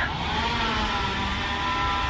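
Engine of tree-cutting equipment running steadily outside, heard from indoors as a low rumble with a steady hum of several pitches.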